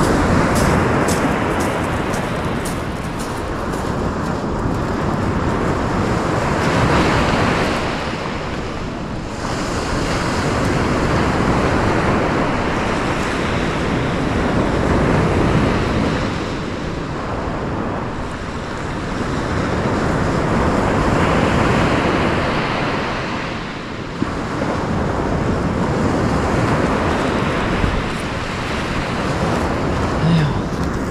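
Sea surf breaking along a shingle beach, the rush swelling and easing every several seconds, with wind buffeting the microphone.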